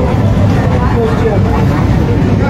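Airport terminal ambience: indistinct voices over a steady low rumble.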